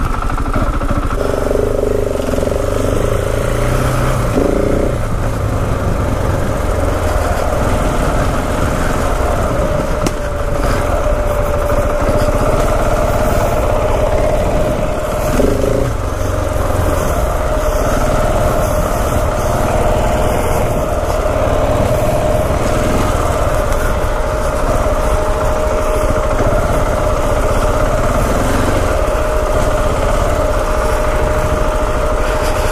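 2016 KTM 690 Enduro R's big single-cylinder four-stroke engine running steadily on the move, revs changing little, heard from the rider's helmet camera with wind rushing over the microphone.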